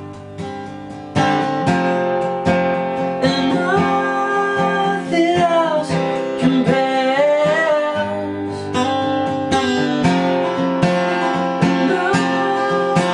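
Acoustic guitar strummed in a steady rhythm, louder from about a second in, with a man singing over it from about three seconds in.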